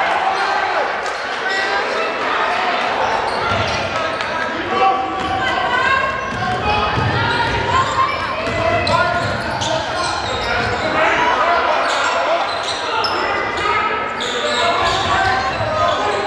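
Basketball dribbled on a hardwood gym floor, with repeated sharp bounces, under the voices of players and spectators echoing in a large gymnasium.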